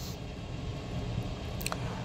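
Background room tone: a steady low hum with a single faint click near the end.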